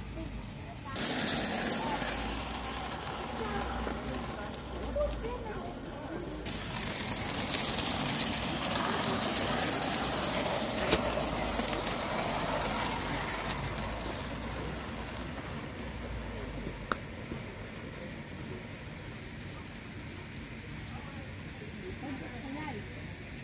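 Gauge 1 live-steam model of a GWR 4300-class 2-6-0 running along its track, its steam hiss and running noise swelling as it passes close by and then fading as it moves away. A short louder rush comes about a second in, and there is one sharp click near the end.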